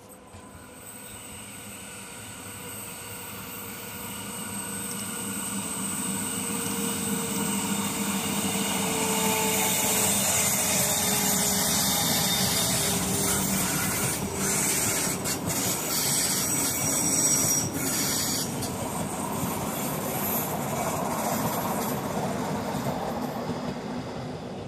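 Rhaetian Railway metre-gauge electric train approaching and passing on a curve, wheels running on the rails with a high squeal from the curving track. It grows louder over the first ten seconds, stays loud while the coaches go by, then eases away.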